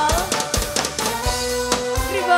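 Live dangdut band playing: a steady drum beat under held keyboard notes, mostly instrumental at this point.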